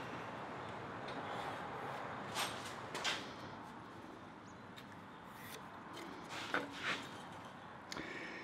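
Quiet workshop room tone with a few faint taps and scrapes: a wooden block set against a steel plate and a pencil marking along its edge. There are two light knocks about two and a half to three seconds in and two more near seven seconds.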